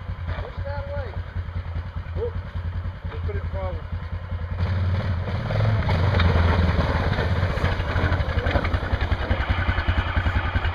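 ATV engine idling with a steady low pulse, then running louder under throttle from about halfway through as the quad is driven down off a rock ledge.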